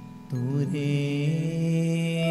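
Gurbani kirtan: a man singing a devotional line over a steady harmonium drone. His voice comes back in about a third of a second in, after a brief dip in level.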